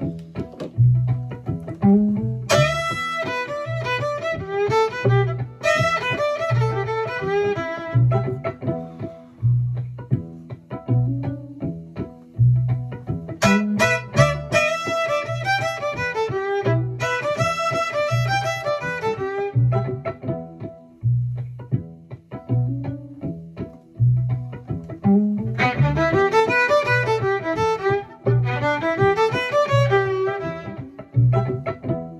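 Fiddle (violin) playing three bluesy call phrases, each a few seconds long, over a backing track with a steady low bass pulse about once a second. Between the phrases only the backing track goes on, leaving room for the listener to play each line back.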